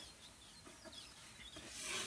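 Faint rustling and rubbing handling noise, a little louder toward the end, as hatchling ball pythons are shifted around on paper towels.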